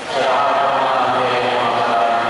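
A priest's voice chanting a prayer of the Mass into a microphone, holding a steady, level pitch on long sustained notes.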